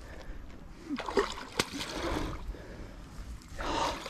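Hooked albino wels catfish thrashing at the water surface, splashing, loudest near the end.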